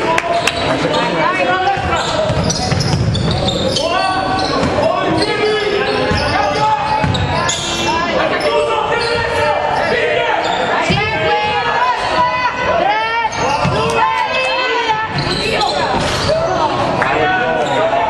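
Basketball being dribbled on a wooden gym floor during play, with many short sneaker squeaks and players' shouts, echoing in the hall.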